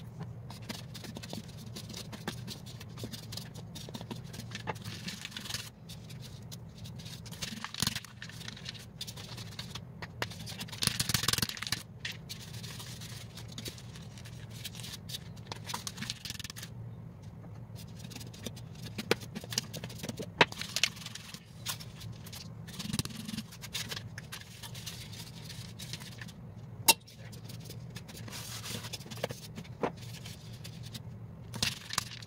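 Dried bottle gourd shaken upside down, its loose seeds and dried pulp rattling inside the hard shell and dropping into a stainless steel bowl in scattered clicks, with a denser burst of rattling about eleven seconds in. A steady low hum runs underneath.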